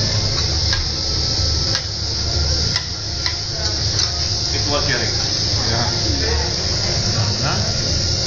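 Food sizzling on a hot teppanyaki griddle as a steady hiss, with a few sharp clinks of metal utensils in the first few seconds and voices murmuring in the background.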